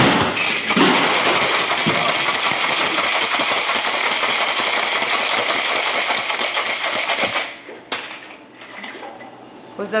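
Ice rattling hard and fast inside a cocktail shaker as a drink is shaken for about seven seconds. It stops abruptly, and a single clink follows a moment later.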